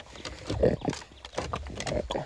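A rapid run of short animal grunts and squeals, several a second and uneven in loudness.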